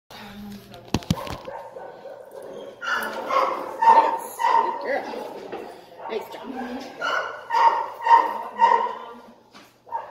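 A dog barking in quick runs of short barks, about two a second, starting about three seconds in, easing briefly around six seconds and then going on until shortly before the end. A couple of sharp knocks come about a second in.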